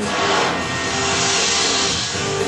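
Rocket component test firing on a test stand: a steady rushing noise that starts suddenly, heard from a projected video over room speakers, with background music underneath.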